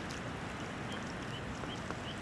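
Steady wind over open water, an even hiss with a low, uneven rumble of wind on the microphone.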